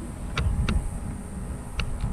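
Wind rumbling on the microphone, with three short clicks.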